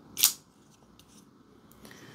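CJRB Scoria folding pocket knife being worked by hand: one short, sharp metallic snap of the blade about a quarter second in, then a few faint clicks.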